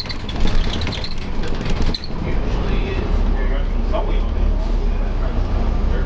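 Interior of a New Flyer D40LF transit bus under way: a steady low rumble from its Cummins ISL diesel and drivetrain, with body rattles and clicks in the first couple of seconds and a sharp knock about two seconds in.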